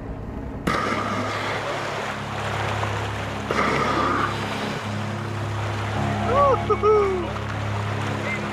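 Boat engine running steadily beside the floating capsule, with water sloshing and wind on the microphone. A few short rising-and-falling calls come in about six to seven seconds in.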